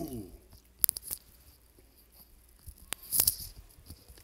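A man's brief murmur trailing off, then a few scattered sharp clicks and a short breathy rustle close to a desk microphone.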